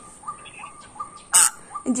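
A small bird chirping over and over, about three short peeps a second. A short, sharp noise cuts in about one and a half seconds in.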